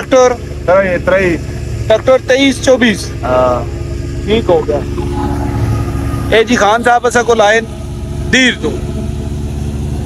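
Steady low drone of a tractor engine driving a wheat thresher, heard under men's talk.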